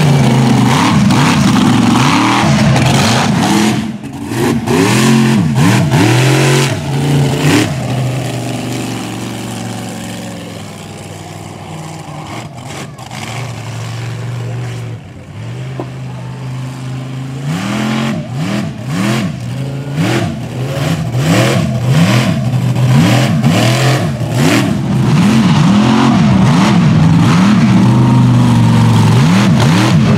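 Mega mud truck's engine revved hard again and again, its pitch sweeping up and down. There is a quieter stretch in the middle, then hard repeated revving again toward the end.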